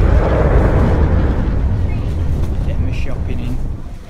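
The rumbling tail of an explosion sound effect, a loud deep boom fading steadily and dying away near the end.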